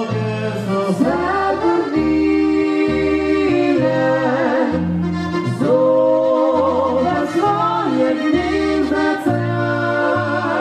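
Slovenian folk dance band playing live, an accordion carrying the melody over a bass line that alternates notes about twice a second.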